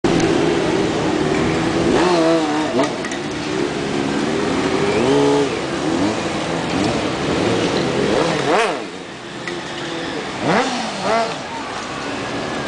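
Sport motorcycle engine revving up and down under a stunt rider's throttle, with repeated sharp blips, the sharpest about eight and a half seconds in and two more near the end.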